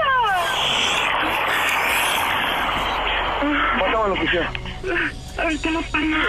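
A voice over a telephone line: a falling vocal cry at the start, then about three seconds of rushing, static-like noise, then more voice sounds without clear words.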